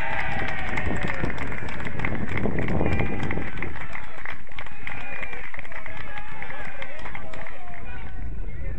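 Several people's voices shouting at once across an outdoor football pitch, with a steady low rumble of wind on the microphone.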